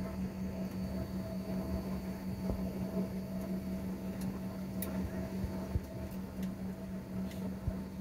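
Steady drone inside an airliner cabin after landing: a constant low hum with a fainter higher tone above it, and a few faint clicks.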